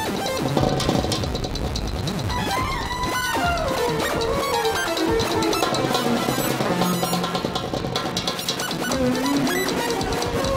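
Improvised electronic ensemble music: an effects-processed guitar melody sliding up and down in pitch over sustained low electronic notes and light, clicking percussion.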